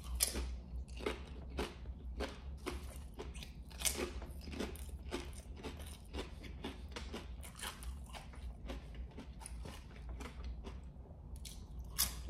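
A mouthful of kettle-cooked potato chips with pickled pig lip being chewed, a steady run of crisp crunches about three a second that ease off near the end.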